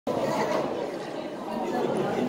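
Indistinct background chatter of several people talking at once, with no single voice standing out.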